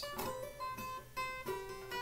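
Acoustic guitar playing a quick run of single notes, linked by hammer-ons and pull-offs, with each third hammered on and pulled off twice.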